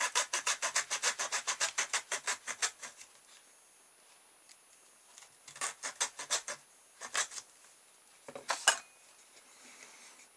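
Small hacksaw cutting a slot into the rim of a cardboard tube: a quick run of rasping strokes, about six a second, for roughly three seconds, then a pause and a few shorter bursts of strokes.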